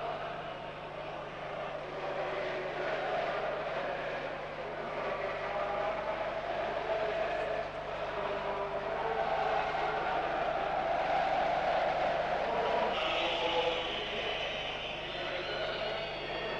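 Stadium crowd of football supporters chanting and cheering, a dense wash of many voices that swells slightly in the middle, over a steady low hum.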